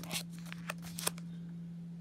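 Foil wrapper of a trading-card pack crinkling in a few short crackles in the first second or so as the pack is turned over in the hand.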